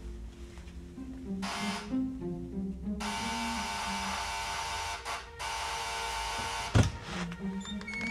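Electric door buzzer ringing: a short buzz, then a long insistent buzz broken once, over soft background music with low mallet-like tones. A single thud comes near the end.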